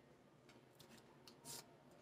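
Near silence, with a few faint, short clicks of tarot cards being handled and slid against one another; the loudest comes about one and a half seconds in.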